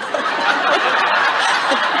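Audience laughing, many people together, swelling in at the start and holding steady.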